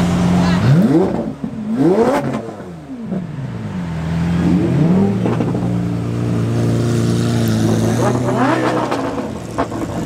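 Lamborghini supercar engines (a blue Aventador's V12, then a black Huracán STO's V10) running while crawling past, blipped into several quick revs that rise and fall, about a second in, at two seconds, near five seconds and again near the end.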